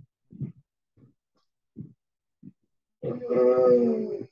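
A person's voice holding a long, drawn-out, hum-like vowel for about a second near the end, pitch level and falling slightly, after a few faint short low sounds.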